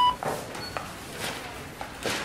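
The last of a quick run of short electronic beeps at different pitches, ending right at the start. It is followed by one faint high beep a little under a second in, over low steady background noise.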